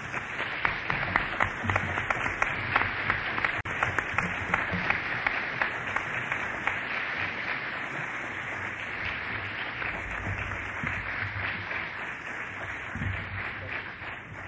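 Audience applauding: a dense patter of many hands clapping that sets in at once and dies away at the very end.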